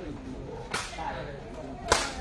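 Sharp smacks of a sepak takraw ball being kicked during a rally: a lighter one a little under a second in and a louder one near the end, over faint crowd chatter.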